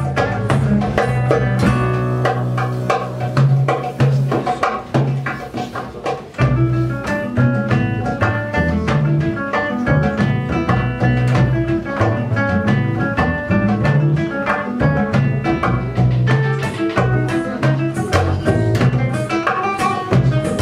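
Live trio of classical guitar, double bass and drum kit playing an instrumental tune, the drums keeping up a busy pattern of strokes under the bass line and guitar melody. The playing thins briefly about five to six seconds in before the full band comes back in.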